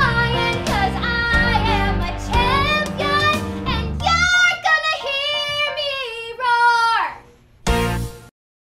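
A young female voice singing a pop show tune over a backing track with a strong bass line. About four seconds in the bass drops out and the voice carries on nearly alone, ending on a long held note that slides down; a short loud burst of sound follows just before it all cuts off.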